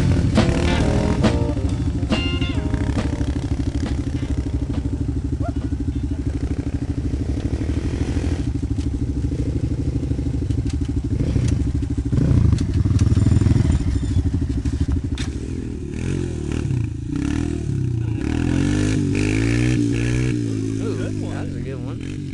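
ATV engine running at a steady pitch for most of the stretch, then revving up and down repeatedly in the last several seconds.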